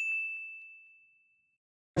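A single bell-like ding: one clear, high ringing tone that strikes sharply and fades away over about a second and a half.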